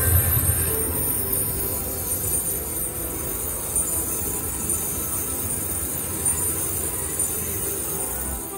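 Slot machine cash-out sound: a steady electronic jingle playing while the cashed-out credits count up on the screen, over the constant background din of a casino floor.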